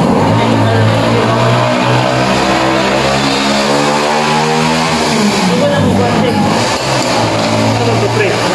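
A motor vehicle's engine running with a steady low hum that dips in pitch about five seconds in and then picks up again, over the chatter of a busy restaurant.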